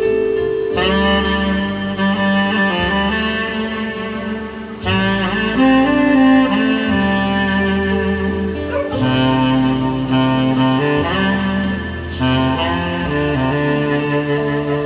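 Saxophone playing a slow, sustained melody over accompaniment with a bass line, the phrases starting afresh about every four seconds.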